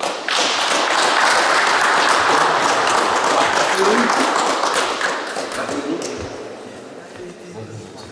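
Small group of people applauding: the clapping starts right away and dies down after about five seconds.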